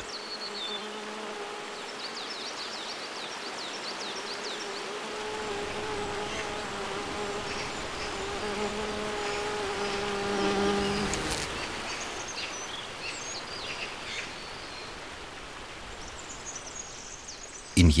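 A bumblebee buzzing in flight, a steady-pitched hum that comes in about five seconds in, swells to its loudest around ten seconds in and fades away soon after. Beneath it runs the steady rush of a forest stream.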